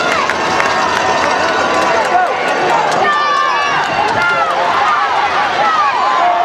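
Crowd of football spectators in the stands shouting and calling out, many voices overlapping.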